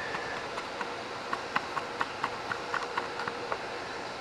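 Light plastic clicks and ticks, about a dozen at uneven spacing, as the plastic air filter cover of a Ryobi handheld gas leaf blower is worked loose and pulled off by hand, over a faint steady hum.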